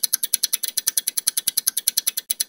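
A rapid, even run of sharp clicks, about twelve a second: a ticking sound effect laid over animated titles.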